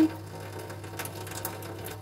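A thin trickle of tap water running into a stainless-steel sink, with a few faint wet clicks of fingers pulling the charred skin off a roasted eggplant, over a steady low hum.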